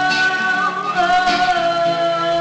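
Live song: a voice singing long held notes over a strummed acoustic guitar.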